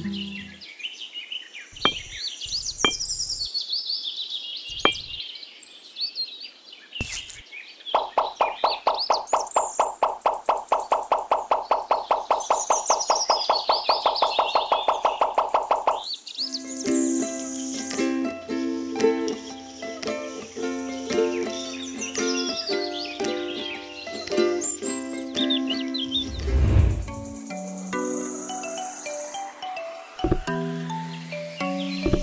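Background music with chirping birdsong over it. A few light knocks come in the first seconds, and a fast, even pulse runs through the middle stretch before the melody fills in.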